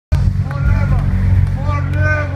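Loud live synth-pop music played through a club PA. A heavy, steady bass line dominates, with a pitched melody line above it that slides up and down.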